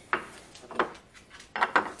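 A metal wrench and tools handled on a wooden tool holder: a few separate light knocks and taps.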